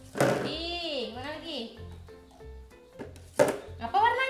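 A wordless voice sliding up and down in pitch for about a second at the start, over background music with a steady beat; a single short knock a little before the end.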